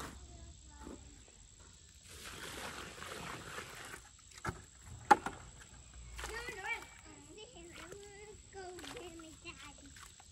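Digging in a pile of dry clay soil: about two seconds of scraping and crumbling dirt, then one sharp knock about five seconds in. A faint high-pitched voice is heard twice in the background later on.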